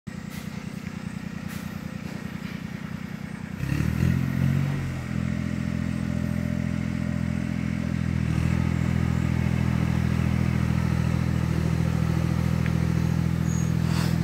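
Iseki TS2810 tractor's diesel engine idling with a rapid, even putter, then revved up about three and a half seconds in and settling into a steady higher-speed run.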